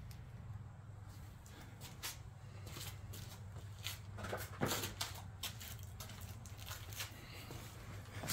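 Faint handling noise: a few scattered light knocks and rubs, clearest about halfway through, as the phone camera is moved and a folding bicycle tyre is picked up, over a low steady hum.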